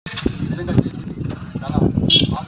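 A man talking in Telugu, with an animated delivery.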